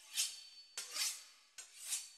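Knife sawing back and forth through the crisp pastry crust of a beef Wellington, a rasping stroke a little under once a second.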